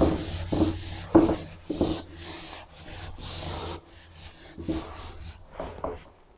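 Chalkboard eraser wiping chalk off a blackboard in a series of brisk back-and-forth rubbing strokes, about two a second.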